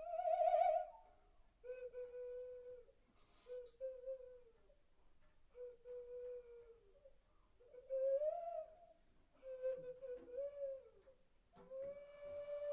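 Slow wordless singing or humming: a string of drawn-out notes held near one pitch, each about a second long with short pauses, the first one wavering.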